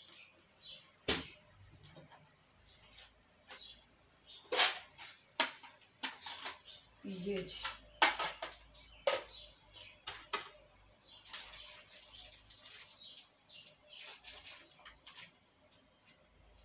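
Kitchen handling sounds: a sharp knock about a second in, then irregular clicks and knocks as plastic food containers and their lids are opened and set down. Packets rustle toward the end.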